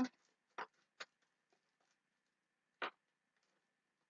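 Three brief, faint clicks of handled cardstock as a paper gift card pouch is held up and turned, with a faint steady high hum underneath.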